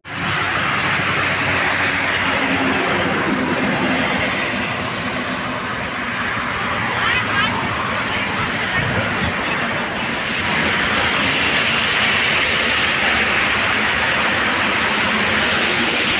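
Steady hiss of traffic on a rain-wet highway, with tyres running on the wet asphalt.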